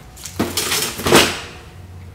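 Cardboard boxes of firework cakes set down into a wire shopping cart: a knock about half a second in, then a louder clatter just after a second.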